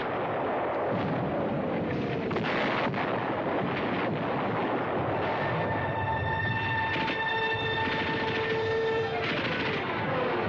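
Battle sound effects of small-arms and machine-gun fire with shell blasts, a dense continuous din with sharp cracks throughout. In the second half a steady pitched tone holds for about three seconds, and falling whistles sound near the start and the end.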